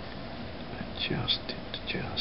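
A man's faint whispered muttering from about a second in, with short hissy syllables over a steady background hiss.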